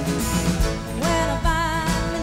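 Live band with drums, bass, guitar and keyboard playing a country-rock song. A woman's voice comes in about a second in with a gliding sung note held with vibrato.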